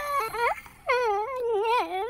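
A cartoon zombie girl's voice moaning in wavering, drawn-out groans, the moans that serve as her speech as she answers a question. There are two stretches, the second starting about a second in.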